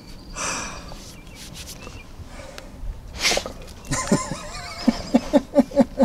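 A dog being petted gives short, sharp snorts, the loudest a little past the middle, followed near the end by a quick run of short pitched sounds, about five a second.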